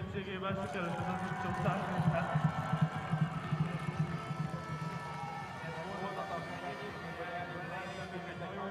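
Spectators clapping and cheering in a grandstand, with many voices and some music over the crowd noise; it is loudest in the first half and eases off after about five seconds.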